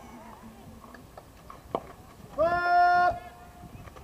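A single sharp knock during a slowpitch softball at-bat, then a loud, long shout: one held vowel lasting under a second, the loudest sound here. Faint talk underneath.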